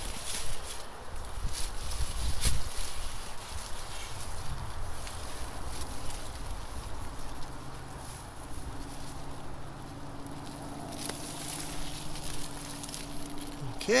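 Hands digging into loose garden soil and working a Swiss chard plant free by its root ball: rustling leaves, soil scraping and crumbling, and scattered sharp clicks, with a low rumble in the first few seconds. A faint, low, steady hum comes in over the second half.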